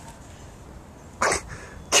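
A person's single short, breathy vocal burst, like a cough, about a second and a quarter in, against a quiet outdoor background.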